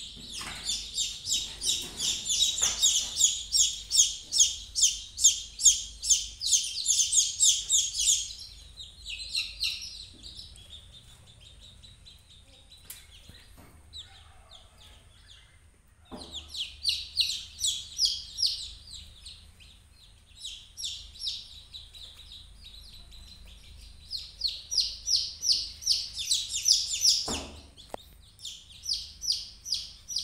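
A brood of country (native) chicken chicks peeping: rapid, high-pitched repeated cheeps, loud and continuous for the first several seconds, then coming in bursts with quieter gaps between.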